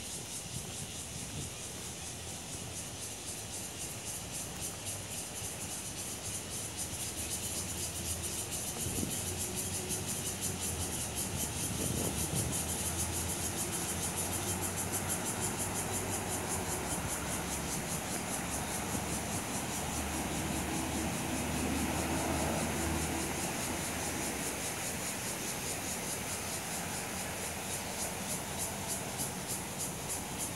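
Insects buzzing in the trees, a steady high-pitched chorus with a fast pulsing throb. A low rumble swells up twice under it, around ten seconds in and again a little past twenty.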